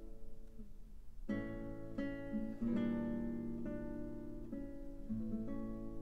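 Mandolin trio playing a classical piece: plucked-string chords and held notes. The sound thins briefly about a second in, then new chords are struck roughly every half second to a second.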